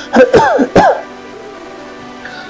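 A man clears his throat with three loud coughing bursts in the first second, over soft background music.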